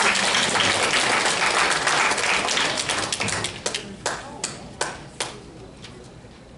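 Audience applause: many people clapping at once, thinning to a few scattered single claps about four to five seconds in before dying away.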